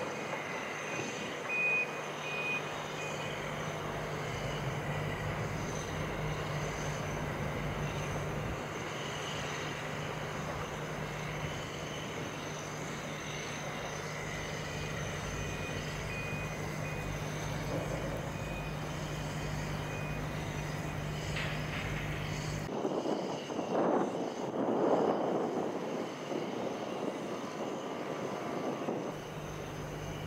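Heavy construction machinery running in the distance, with a steady low engine hum and a reversing alarm beeping in the first few seconds. About three-quarters through, the sound cuts and gives way to louder, uneven rumbling.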